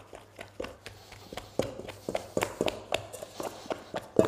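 Sourdough dough being kneaded by hand in a stainless steel bowl: irregular sticky slaps and squelches of the dough, with sharper knocks, a few a second.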